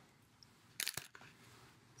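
A short burst of crunchy handling noise with a couple of sharp clicks, just under a second in, from a fake flower and its clip being handled.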